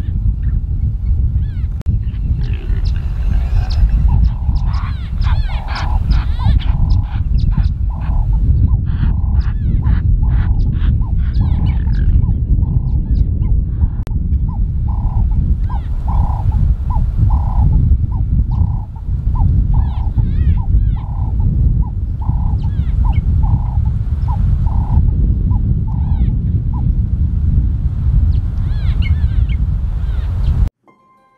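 A wild animal calling in long series of short, repeated pitched calls over a heavy low rumble. The calls are busier in the first part and settle into an even run of about two a second in the middle.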